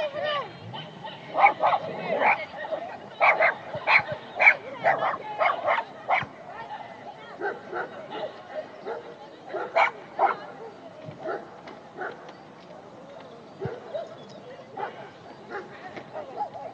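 A dog barking: a quick run of loud barks, about two a second, in the first several seconds, then fainter barks spaced further apart.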